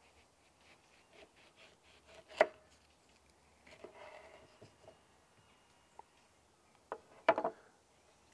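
Serrated knife cutting through a green-skinned Owari Satsuma on a plastic cutting board: quiet slicing and scraping through the peel, with a sharp tap on the board about two and a half seconds in and a few more sharp taps near the end.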